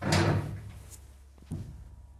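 The stainless steel sliding doors of a modernized 1975 KONE elevator closing with a loud clunk, followed about a second and a half later by a shorter, sharper thump.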